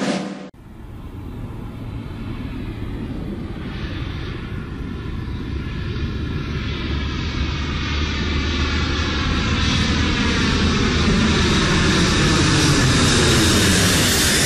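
A steady aircraft-engine noise that grows louder throughout, like a plane approaching. A drum stroke ends about half a second in.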